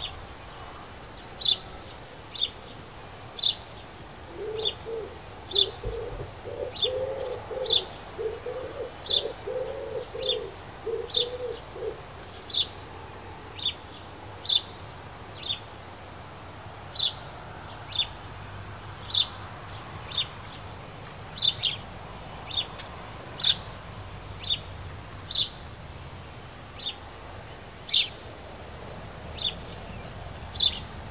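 A small garden bird gives short, sharp chirps, about one a second, each falling in pitch, with a few quick higher trills between them. Behind it, a pigeon or dove coos in a rhythmic low phrase for several seconds early on.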